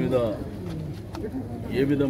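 A man's voice in an outdoor crowd, pausing between phrases, with a short, low cooing call near the start.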